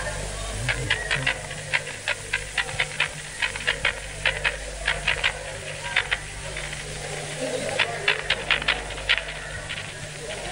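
Scattered, irregular hand claps from a live audience, coming in loose clusters, over a low crowd murmur and a steady electrical hum from an old recording.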